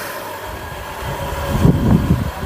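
Street noise: a low rumble that grows louder through the second half, over a steady mechanical hum.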